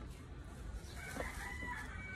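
A rooster crowing faintly, one drawn-out call starting about a second in and lasting about a second.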